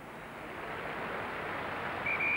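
Outdoor stadium background noise: a steady rush of wind on the microphone and a crowd, growing slightly louder over the two seconds.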